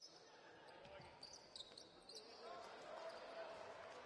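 Faint on-court game sound from a basketball arena: a basketball bouncing, a few short high squeaks from shoes on the hardwood floor about one to two seconds in, and low voices in the hall.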